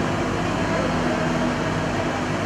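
Steady machine hum in an ice arena, even in level throughout, with indistinct voices under it.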